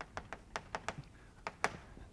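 Chalk writing on a blackboard: an irregular run of short taps and clicks as the chalk strikes the board, the loudest near the end.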